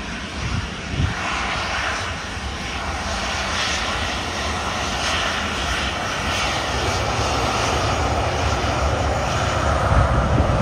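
Jet engines of a Boeing 737-800 running as it rolls along the runway, a steady jet noise that builds slowly, with a whine rising slightly near the end. There is a low thump about a second in.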